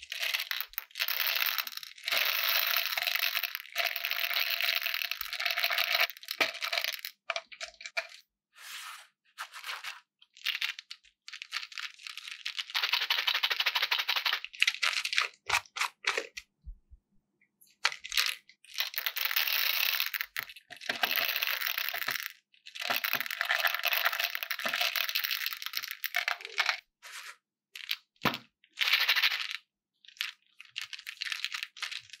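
Small hard round candy balls pouring out of a plastic jar into a dish heaped with more candy balls, making a dense clattering rattle. The pours come as several long streams separated by short pauses, with a few single clicks in between.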